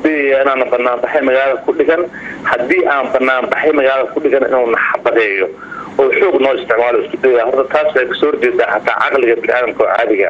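Speech only: a man talking steadily in Somali, with brief pauses between phrases.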